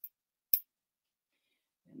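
A faint click, then a single sharp click about half a second in.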